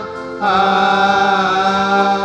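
A priest's single male voice chanting a sung prayer into a microphone. After a brief pause it starts a long phrase about half a second in, held on nearly steady notes with small slides between them.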